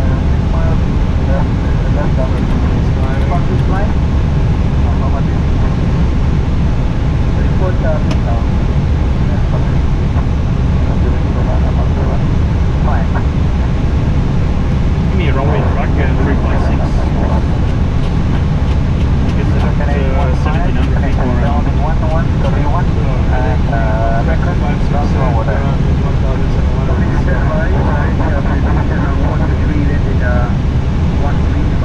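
Steady, loud low rumble of airflow and engines heard inside an airliner cockpit in flight on approach. Faint voices come and go in the second half.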